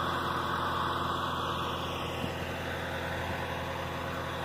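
Oliver tractor engine running at a steady, unchanging speed while picking corn, a continuous drone.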